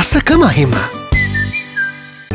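Advertising jingle: a voice over bright music, then about a second in a short whistled phrase of about four high notes over a held chord, which fades out near the end.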